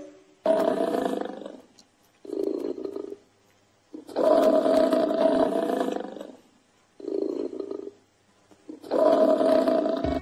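Water buffalo calling: five deep, drawn-out growling calls, long ones of one to two seconds alternating with shorter ones, with brief pauses between.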